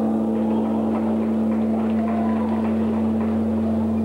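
A steady low hum holding one pitch throughout, over faint crowd noise from an arena audience.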